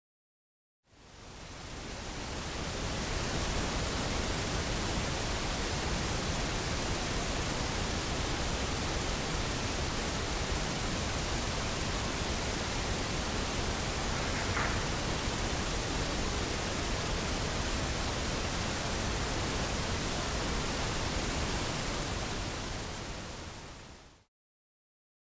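Loud steady hiss of a heavily amplified audio recording, fading in about a second in, with a faint short clack about halfway through that the investigators liken to a door handle being worked.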